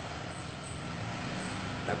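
Steady low hum with a faint hiss in the background, and a man's voice starting just before the end.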